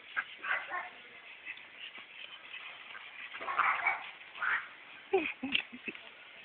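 Domestic ducks quacking in short scattered calls, loudest around the middle, with a quick run of short, lower sounds near the end.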